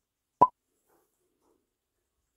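A single short, sharp pop, a little under half a second in.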